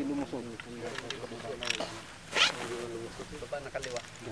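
Voices talking in the background, with one short scraping rustle a little past halfway.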